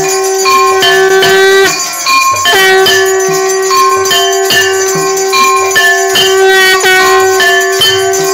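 Devotional aarti music: a steady held drone note under a stepping melody, with quick rhythmic bell strikes.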